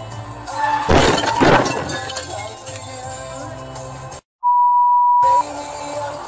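A car collision heard from inside the car over background music: a loud crash with breaking, peaking twice about half a second apart, about a second in. Later the sound cuts out for a moment and a steady one-second beep plays, a censor bleep.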